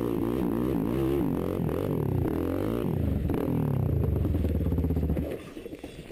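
Quad bike (ATV) engines running over a steady low drone, revving up and down again and again. The sound cuts off sharply about five seconds in.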